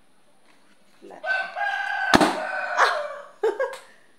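A rooster crowing, one drawn-out call lasting about two seconds, with a sharp snap about two seconds in and a few short noises after it.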